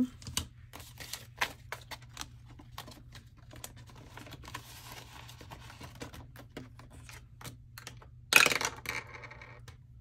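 Paper banknotes being handled and counted, with quick light clicks and rustles, then a cash envelope and the clear vinyl pages of a ring binder being handled, with one sharper, louder rustle about eight seconds in.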